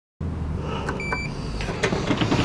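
Lift call button pressed: two sharp clicks about a second in with a short single-pitched electronic beep, the button's acknowledgement tone, over a low steady hum.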